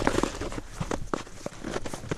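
Ice skates moving on an outdoor ice trail: an irregular run of sharp scrapes and clicks from the blades on the ice.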